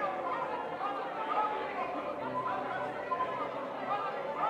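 Many voices speaking at once without a break, a congregation praying aloud together, each person on their own words.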